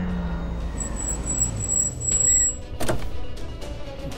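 A car driving, its engine making a steady low rumble, under dramatic background music, with one sudden sharp sound about three seconds in.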